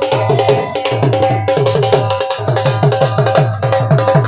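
Dhol drum played in a fast, steady rhythm: deep bass strokes that sag in pitch, mixed with sharp stick cracks, with a steady held tone sounding above the drumming.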